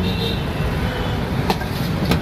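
Steady roadside traffic noise, with a single sharp click about one and a half seconds in.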